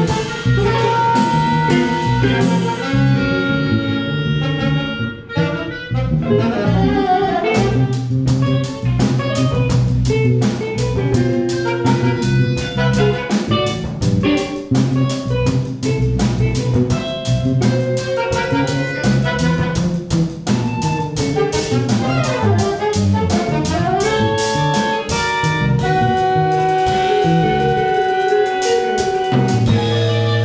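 Live chamber orchestra and rock band playing together: held chords at first, then about seven seconds in a drum kit comes in with a fast, steady beat under moving bass and horn lines. Near the end long held notes come back over the beat.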